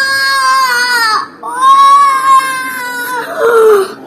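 A small boy crying in long, high wails: one breaks off about a second in, a second long wail follows after a breath, and a shorter, lower cry comes near the end. He is crying over his foot, which is bleeding.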